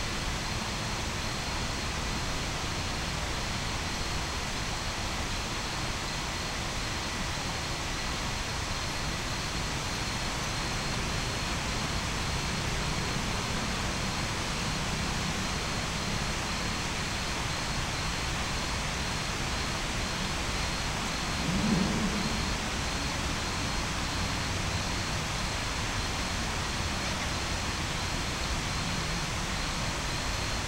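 Steady hiss and hum of a city at night, with distant traffic blended into an even noise, and one brief low sound about 22 seconds in.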